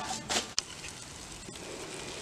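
Faint, steady sizzle of meat and vegetables cooking on aluminium foil over charcoal in a stone barbecue pit, after a short breathy laugh and a click about half a second in.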